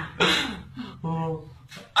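A man's pained vocal sounds as hot wax is pulled from his beard: a short noisy cry just after the start, then a brief, steady, hummed groan about a second in.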